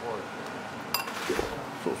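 A single sharp clink of a serving utensil against a ceramic bowl about a second in, with a short ring after it, while steaming noodles are dished out.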